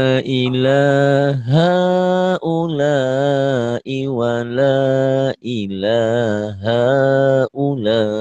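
A man chanting Arabic Quranic text slowly, holding long vowels on sustained notes that rise and fall, in about six phrases with short breaks for breath: a melodic demonstration of the long vowels (mad) of Quran recitation.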